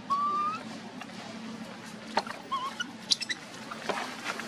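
A short, high whistle-like call rising in pitch at the very start, then a brief wavering chirp about halfway through, with a few sharp clicks in between and near the end.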